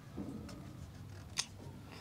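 Quiet pause with faint low background sound and one sharp click about a second and a half in, with a couple of fainter ticks before it.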